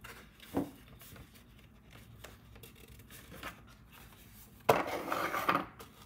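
Cardstock rubbing and scraping under the fingers as a folded paper box is pressed together and handled, loudest for about a second near the end, with a single soft tap early on.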